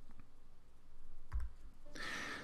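Quiet room tone with one short click about a second and a half in.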